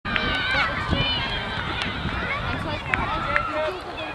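Overlapping voices of children and adults calling out across the field, short high calls, with a few sharp knocks in between.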